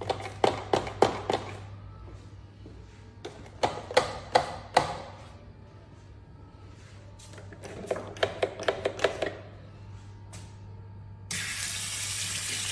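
Wall-mounted soap dispenser clicking as it dispenses soap into a hand: short bursts of sharp clicks, three times. Near the end a faucet turns on and water runs into the sink.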